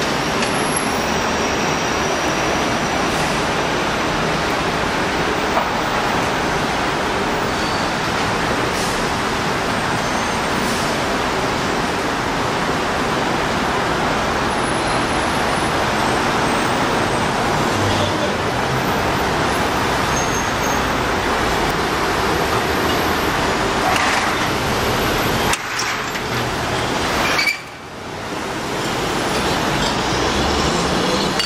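Steady city street traffic noise from passing cars and vans, with a brief lull near the end.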